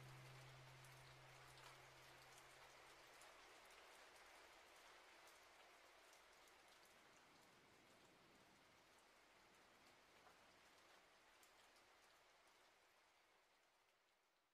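Very faint, steady rain with separate drops audible in it, fading out toward the end. In the first few seconds a low held note lingers and dies away.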